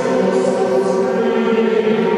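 A choir singing a chant on long held notes, with the hiss of sung consonants about half a second in.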